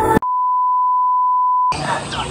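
A single steady electronic beep, one pure tone held for about a second and a half. The music cuts off abruptly just before it, and voices and music return as it stops.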